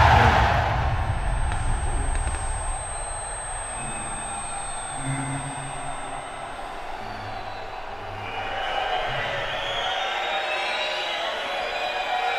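Film sound design for a knockdown: the tail of a heavy impact fades at the start, then low held music notes sound one after another under a muffled room hush. Crowd noise swells back in over the last few seconds.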